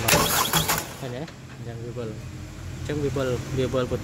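A man talking in short phrases over a steady low hum, with a brief loud rush of noise in the first second.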